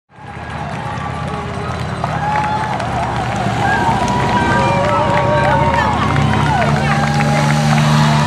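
Roadside spectators cheering and calling out over the steady low engine of a motorcycle riding slowly past; the engine grows louder in the second half.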